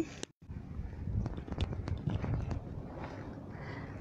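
Rustling and several sharp clicks of an earphone being fitted into the ear and handled against the microphone, after a brief cut-out in the sound near the start.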